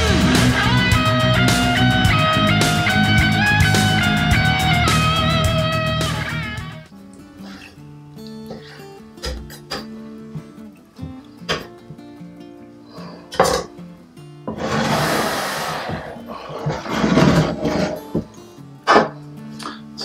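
Guitar background music, loud for about six seconds and then fading low. After that, scattered sharp taps of a chef's knife on a wooden cutting board while raw beef is sliced thin, with a couple of brief rustles.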